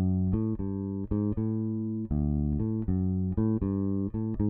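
Fender Precision Bass playing a chromatic etude unaccompanied: a steady run of single plucked notes stepping up and down by semitones, some short and a few held longer.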